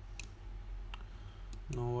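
Three short computer mouse clicks, roughly half a second apart, over a low steady hum.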